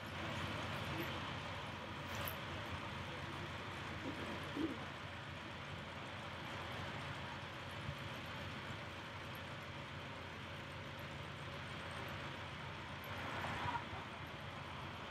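Steady outdoor ambience: an even hiss with indistinct distant voices and a few faint knocks.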